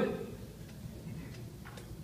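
A pause in speech: low room tone, with a few faint clicks near the end.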